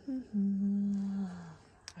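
A woman humming with her mouth closed: a short note, then one long steady 'mmm' lasting about a second that dips slightly in pitch as it fades.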